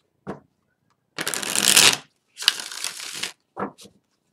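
A deck of tarot cards being shuffled by hand: two longer runs of rapid card flutter, the first the loudest, with brief card noises just before and near the end.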